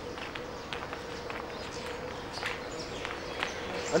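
Footsteps on brick paving: faint, irregular steps of a person walking, over a steady faint hum.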